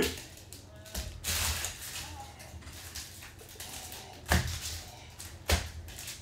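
Trading cards and packs being handled on a tabletop: a brief rustle about a second in, then two sharp taps on the table about a second apart near the end.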